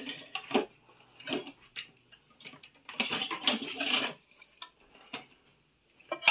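Slotted spoon clinking and scraping against a glass baking dish as roasted baby potatoes are scooped out, in scattered short knocks with a busier stretch about three seconds in.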